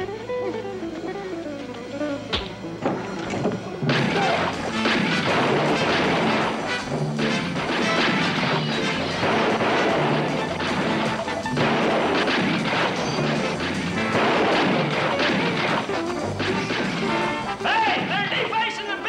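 Background music over the shots and crashes of a gunfight. It becomes much louder about four seconds in.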